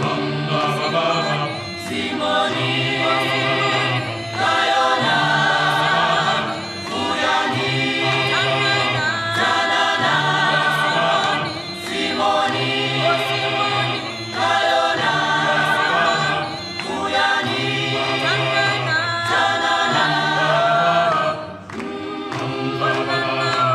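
Background music: an unaccompanied choir singing in repeated phrases about two seconds long, over sustained low bass voices.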